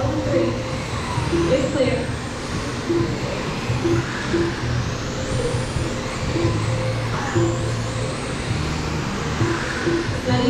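Radio-controlled race cars running laps on a dirt oval, their motors whining up and down in pitch, over music and a voice on the track's sound system.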